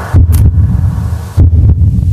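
Electronic logo sting: deep booming bass hits, two strong ones a little over a second apart, with a brief high swish just after the first.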